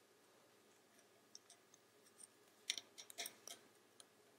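Near silence with faint clicks and taps of wooden double-pointed knitting needles as stitches are worked, a few scattered ones and then a quick cluster past the middle.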